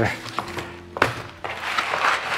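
Cardboard pizza box being handled and slid on the table: a sharp tap about a second in, then cardboard rustling near the end.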